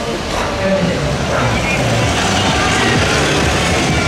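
A road vehicle driving slowly through a street crowd, its running engine mixed with crowd chatter and background music.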